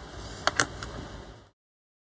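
A few light plastic clicks as the screw lid is taken off a small jar of metallic wax, then the sound cuts off completely about a second and a half in.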